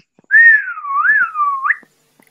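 A person whistling one wavering note for about a second and a half. It dips and rises twice and ends in a quick upward sweep.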